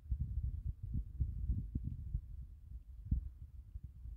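Wind buffeting the microphone: an uneven low rumble with irregular thumps, loudest in the first half.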